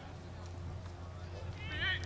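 A high-pitched shout from a player or spectator near the end, over a steady low rumble on the microphone.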